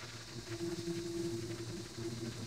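Pressure washer running with a surface cleaner working the pavement: a steady water hiss under an even machine hum.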